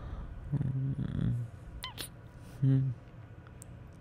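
A man's low, sleepy hums, two of them: a longer one about half a second in and a short louder one near three seconds in, with a brief high squeak and a click between them.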